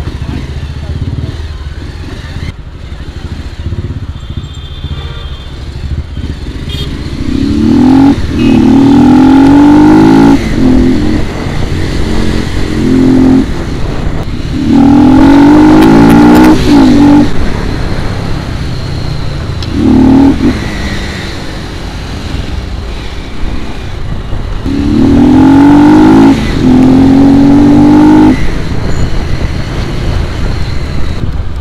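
Royal Enfield Classic 350's single-cylinder engine through an aftermarket exhaust, running on the road and accelerating hard several times. Each time its note rises and then breaks off at the gear changes. The loudest runs come about a third of the way in, around the middle, and near the end.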